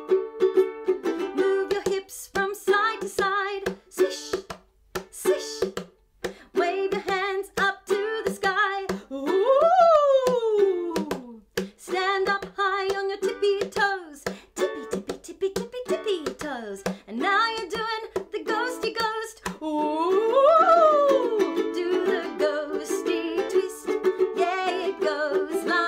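Upbeat children's song with strummed ukulele and a woman singing. Twice, about ten and twenty seconds in, a long note slides up in pitch and back down.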